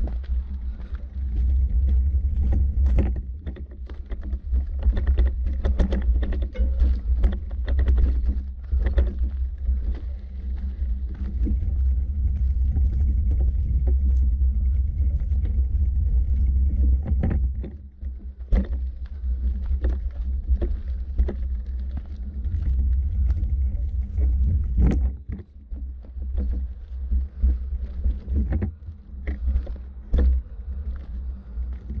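Low rumble of wind buffeting the camera's microphone, with the irregular scuffs and crunches of footsteps on a dirt forest path. The rumble drops away briefly twice in the second half.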